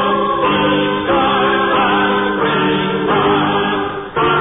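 A choir singing a hymn, held notes moving from one chord to the next every half second to a second.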